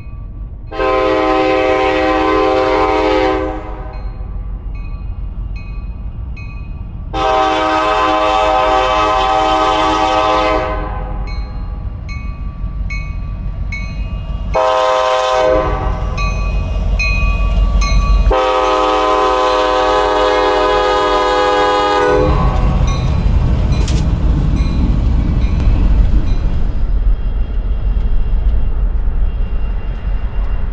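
CSX SD70 locomotive 4568's multi-note air horn sounding the grade-crossing signal (long, long, short, long) over the low rumble of its diesel engine. The rumble grows louder as the locomotive draws level and the train rolls past in the last seconds.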